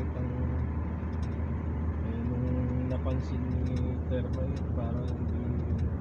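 Steady low rumble of a car driving on the road, heard from inside the cabin, with voices talking softly over it.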